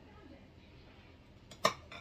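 Quiet knife work as a matcha bundt cake is cut on a plate, then one sharp click near the end.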